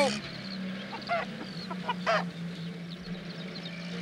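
A hen clucks with a few short rising squawks over the steady low hum of a small van's engine approaching along the lane.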